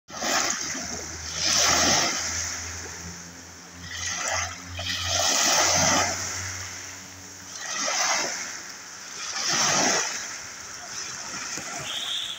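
Small sea waves breaking and washing up on the shore, each surge hissing with foam and then falling back, about six times.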